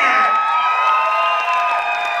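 Audience cheering and screaming, several high voices holding long shouts, as a dance routine ends on its final pose.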